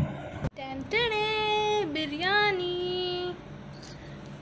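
A woman singing a snippet of song in two long held notes, coming in after an abrupt cut about half a second in and stopping a little before the end.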